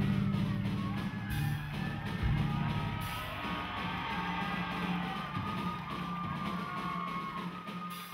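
Live rock band of children playing drum kit, electric guitars and bass, with cymbal crashes a little over a second in and again at about three seconds.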